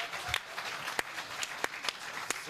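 Studio audience applauding: a dense, even patter of many hands clapping, with a few louder single claps standing out.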